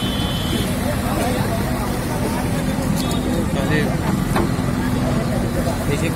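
JCB backhoe loader's diesel engine running with a steady hum, under the chatter of a crowd of onlookers.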